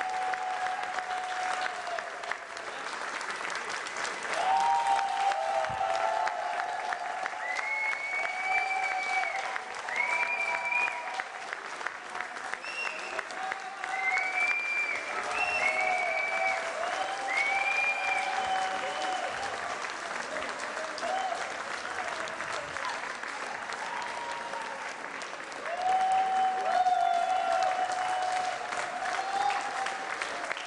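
Audience applause: steady clapping from a seated crowd, swelling about four seconds in and again near the end, with short drawn-out calls from the crowd over it.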